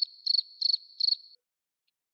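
Cricket chirping, the comic 'crickets' awkward-silence sound effect: a thin high trill pulsing about three times a second that cuts off abruptly a little over a second in.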